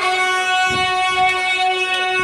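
A live band holding a single sustained chord, several pitched notes ringing steadily with no drums under them.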